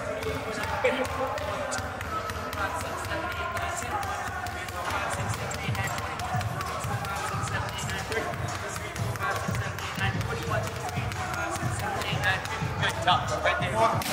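A basketball dribbled fast and low on a hardwood court floor, a quick run of bounces, under background music.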